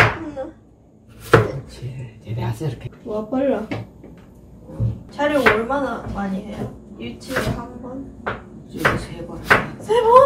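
Kitchen knife slicing potatoes, hitting the cutting board with a sharp knock about a second in, then more sharp kitchen knocks. Women's voices talk quietly in between.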